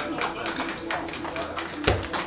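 A live band's final chord dying away as scattered hand claps and voices start up from a small audience, with a dull thump near the end.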